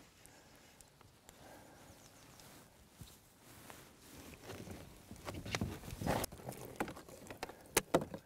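Faint, irregular clicks and taps of fly-fishing gear being handled in a small inflatable boat while a fish is played, growing busier in the second half with a few sharper clicks near the end.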